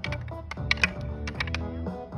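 Wooden sticks clacking together in a mock sword fight, several sharp knocks in quick, uneven succession, over background music with steady held notes.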